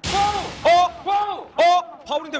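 Four short, high-pitched shouts about half a second apart, each rising and then falling in pitch.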